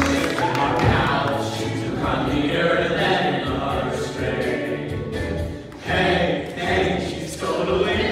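A group of boys singing together over instrumental accompaniment, a stage-musical ensemble number. The sound dips briefly just before six seconds in, then comes back.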